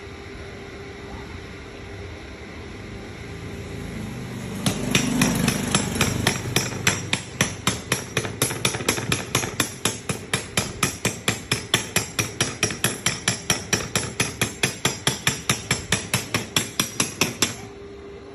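Stick welder's arc being struck and broken over and over in quick, even pulses, a sharp crackle about four times a second. It starts about five seconds in and stops suddenly shortly before the end.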